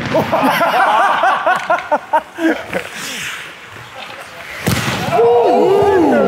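Players' voices and shouts, with one sharp crack about three-quarters of the way through as a hockey stick shoots a small plastic ball.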